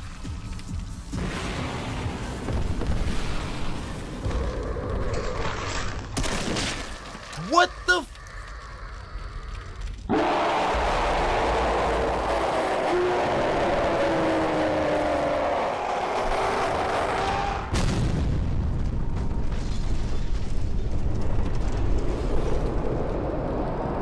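Soundtrack of an animated battle scene: music with deep booms and blast sounds and some voices, changing abruptly about ten seconds in.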